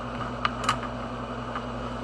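Two short clicks of pens knocking together on a wooden desk as one is picked up, about half a second in and again just after, over a steady low background hum.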